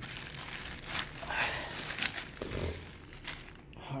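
A clear plastic bag and a candy-bar wrapper crinkling in a hand, in irregular rustles with small clicks, as the bar is put into the bag and the bag is closed.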